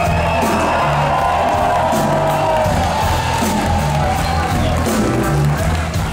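Live blues-rock band playing: electric guitar, bass guitar and drum kit, with a repeating low bass-and-drum pattern under sustained guitar tones. A crowd cheers and whoops over the music.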